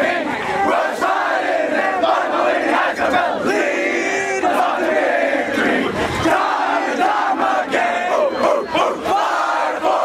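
A big group of high school football players shouting and yelling together in celebration, many young men's voices overlapping at once, loud and steady throughout.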